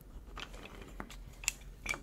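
Small wooden KEVA planks clicking against one another as they are picked up from a stack: a few light, sharp knocks spread over about two seconds.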